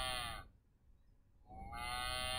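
A recorded cow mooing, played from the sound button of a Melissa & Doug wooden farm-animal sound puzzle. One moo fades out about half a second in, and after a short silence a second moo begins near the end.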